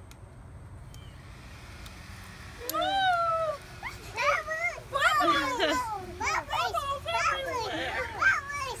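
Small children squealing with excitement: high-pitched wordless cries that sweep up and down in pitch, starting about three seconds in and repeating many times. Before that there is only a faint steady hiss.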